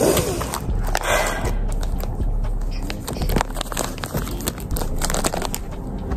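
Close handling of a small cardboard jewellery box and its packaging: rustling and crinkling with many small clicks and taps as the lid is opened and the contents are lifted out.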